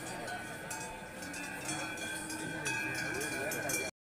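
Cowbells ringing, several steady bell tones overlapping and coming in and out, over a background murmur of crowd voices. The sound cuts off abruptly near the end.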